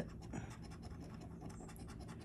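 A coin scraping the coating off a paper scratch-off lottery ticket in quick, short, faint strokes, with the ticket lying on a hard stone countertop.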